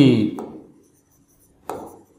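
A man's word trails off at the start. Then, after a pause, a marker pen makes a short scratchy stroke on a whiteboard near the end.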